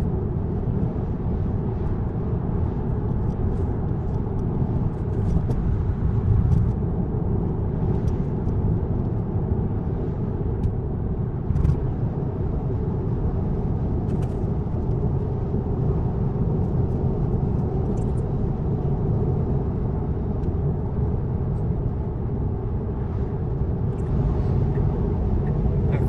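Steady road and tyre noise heard from inside a Tesla electric car's cabin at highway speed, a low, even rumble with a few faint ticks and no engine note.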